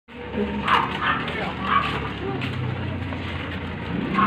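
A dog barking several times in short bursts, over a low steady hum.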